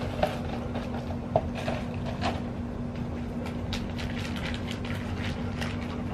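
A steady low mechanical hum with light scattered clicks and rustles over it.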